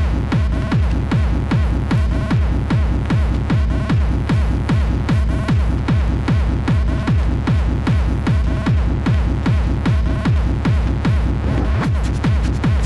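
Early hardstyle dance music: a heavy kick drum with a falling pitch on every beat, under a synth line.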